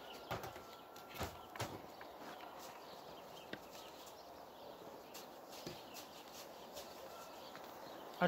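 A beehive being opened by hand: a wooden screened inner cover is lifted off and set down, and a felt quilt is peeled back from the top of the hive. This gives a few faint knocks and rustles, most of them in the first two seconds.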